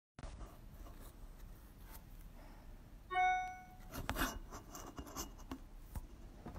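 A short bell-like electronic chime sounds about three seconds in, several pitches ringing together and fading within a second. It is followed by scattered light taps and knocks as a phone is handled on a desk.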